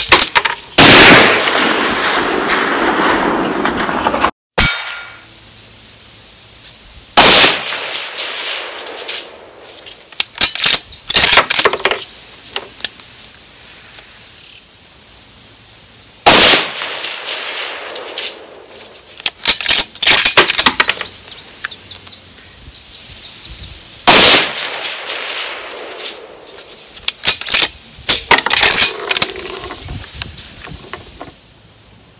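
Four shots from a .308 bolt-action rifle fired off a bench rest, spaced several seconds apart, each followed by a trailing echo. Between the shots come bursts of sharp metallic clicks from the bolt being worked.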